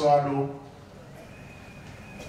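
A man speaking through a microphone ends a phrase on a drawn-out, falling vowel about half a second in, then pauses; the rest is faint room noise with a thin, steady high tone.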